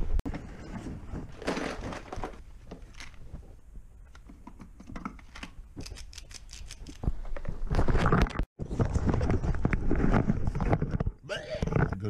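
Handling noise from a handheld camera being grabbed and moved about: rustling and crinkling with small knocks, quieter at first and much louder in the second half, broken by a brief dropout about eight and a half seconds in.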